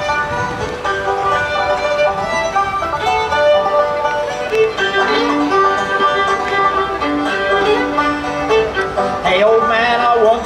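Live acoustic folk music: an instrumental break between the sung verses of a song, a melody of held, steady notes. The voices come back in right at the end.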